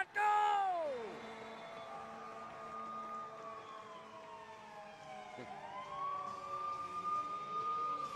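Arena goal siren sounding for a goal. It holds one pitch for about two seconds, glides slowly down over the next few seconds, then rises back up and holds again near the end.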